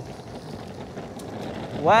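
Electric skateboard wheels rolling over a rough stamped-concrete path with wind on the microphone, a steady rushing noise that gradually grows louder as the boards accelerate from a standing start.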